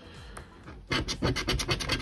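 A coin scratching the coating off a scratch-off lottery ticket in a quick run of short strokes, starting about a second in.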